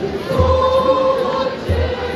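A choir singing, with one note held for about a second near the start, over deep drum beats, two of them in these two seconds.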